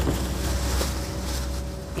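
Steady outdoor background noise: a low rumble with an even hiss over it.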